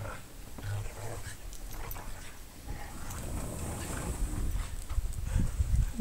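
Two dogs playing tug of war over a rope toy, making short, scattered play noises. A low rumble builds near the end.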